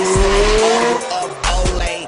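A car drifting, its tyres squealing and engine revving, over hip-hop music with a steady beat. The squeal fades about a second in.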